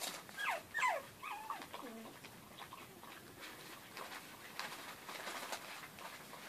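Puppies at play: a few short high yelps that fall in pitch, then some wavering yips in the first two seconds. After that come scattered light ticks of claws on a hard floor as they scuffle.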